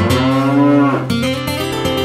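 A cow mooing once, a single call of about a second near the start, over plucked-string guitar music.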